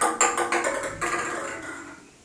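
A quick run of sharp taps and knocks on hard objects, each with a short ringing after it, fading out about one and a half seconds in: small hard things being handled and knocked together on a low shelf.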